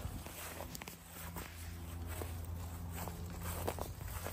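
Footsteps on grass: irregular soft steps and light knocks over a steady low rumble.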